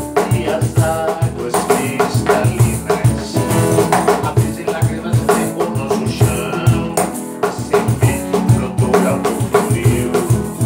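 Acoustic guitar strummed together with a cajón beating out a steady rhythm of low bass strokes.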